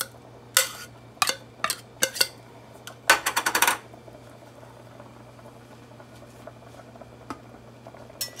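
Metal spoon scraping and knocking tuna out of a tin can over a skillet: a few separate clinks in the first couple of seconds, then a quick rattle of taps a little after three seconds.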